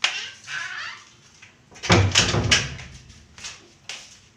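A wooden door being opened and handled: a sharp click at the start, then a cluster of heavy thumps about halfway through and a few lighter knocks near the end.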